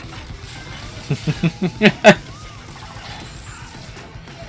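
Animated fight-scene soundtrack: a quick run of about six short vocal grunts and hits in the space of a second, the last and loudest about two seconds in, over a low music bed.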